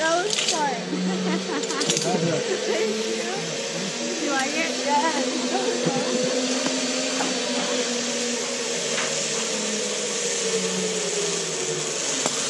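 Zip line trolley pulleys running along the steel cable: a steady whirr that starts about a second in, rises a little in pitch and falls back, and fades near the end.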